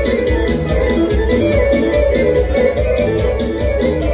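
Bosnian folk kolo music, with an electronic keyboard playing the melody over a steady beat and heavy bass.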